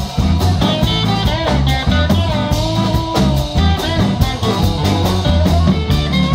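Live blues band playing an instrumental passage: an electric guitar lead with bent notes over bass, rhythm guitar and a steady drum beat.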